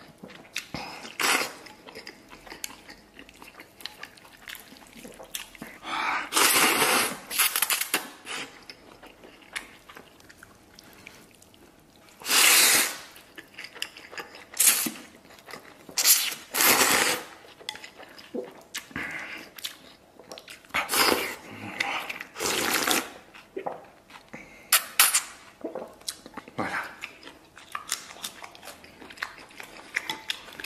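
Noodles slurped up from a bowl of soup in a dozen or so noisy gulps, the longest lasting about a second, with chewing in the quieter stretches between.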